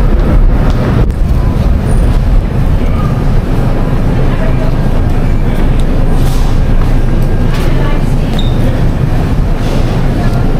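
Steady low rumble of a shopping cart's wheels rolling over a store floor, with a few light rattles.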